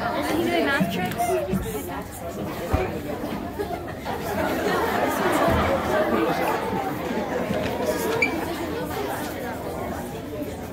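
Indistinct chatter of several voices talking at once, echoing in a large hall.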